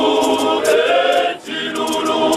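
Men's choir singing together, with a short break in the singing about one and a half seconds in.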